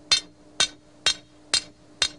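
Hammer striking metal stakes four times, about two blows a second, each a sharp, ringing knock.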